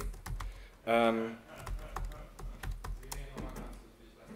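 Typing on a laptop keyboard: a run of irregular keystrokes, with a short voiced hum from the typist about a second in.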